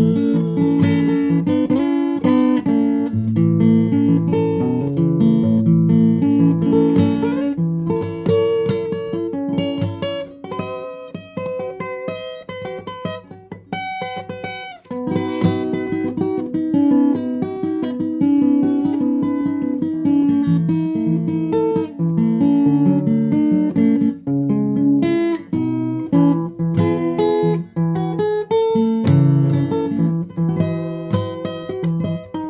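Acoustic guitar playing, plucked notes and strummed chords. It thins out to a softer, sparser passage about a third of the way in, then picks up fully again about halfway through.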